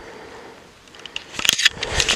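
Handling noise on a handheld camera's microphone: faint at first, then from about a second and a half in a run of clicks and crackling rustle as the camera is swung round.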